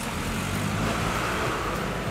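Steady road traffic noise, swelling a little around the middle as a vehicle passes.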